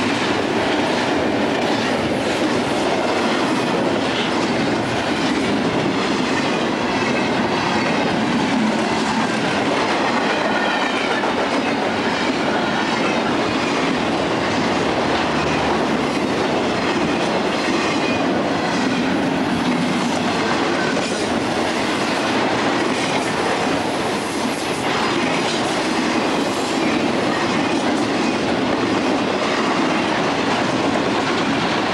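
Intermodal freight train of trailers on flatcars passing close by: steady, loud steel-wheel-on-rail running noise from the rolling cars.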